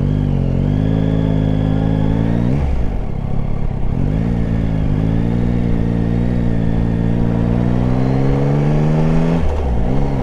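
Yamaha Tracer 9 GT's three-cylinder engine accelerating. Its pitch climbs steadily in each gear and dips briefly at three upshifts, about three, five and nine and a half seconds in.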